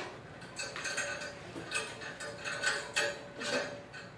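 Metal chain of a grooming-table restraint loop clinking and rattling as it is handled, a string of small irregular clicks.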